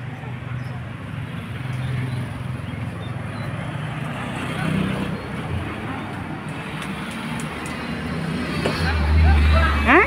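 Street traffic: motorcycle and car engines running along the road, with a vehicle passing close near the end as a louder low rumble.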